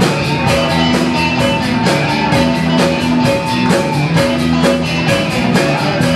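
Live rock band playing: electric guitars and bass over a drum kit keeping a steady beat.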